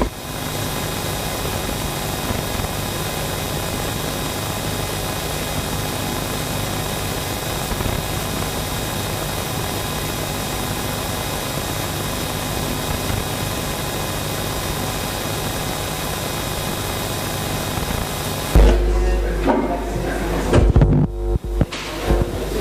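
A steady, even electronic hiss with faint held tones, unchanging in level, which cuts off suddenly near the end when ordinary room sound with a voice returns.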